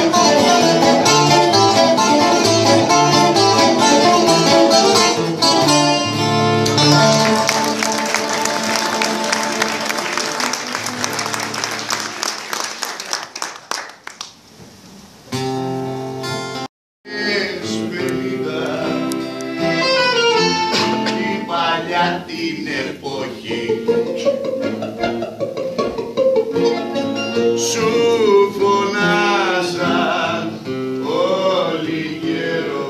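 Live Greek laïko music on accordion, bouzouki and guitar: a full ensemble passage fades out at about the middle, with a few held notes after it. After a sudden brief cut, the instruments come back in with a voice singing over them.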